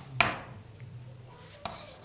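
Chalk tapping against a blackboard as a child writes digits: two sharp taps about a second and a half apart.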